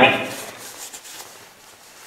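A voice trailing off right at the start, followed by the faint, steady hiss of a quiet room.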